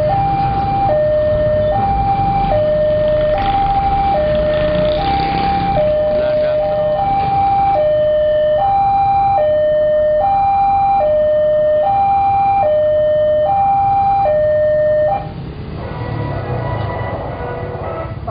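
Railway level-crossing warning alarm: an electronic hi-lo signal alternating between a higher and a lower note, each held a little under a second, warning road traffic that the barrier is closing for a train. It cuts off suddenly about fifteen seconds in, leaving the noise of passing motorbikes.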